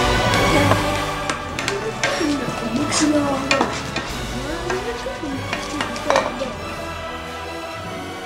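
A fork stirring and scraping scrambled eggs in a frying pan, with irregular clicks of the fork against the pan. The clicks are busiest in the first half and again briefly after about six seconds, over the sizzle of frying.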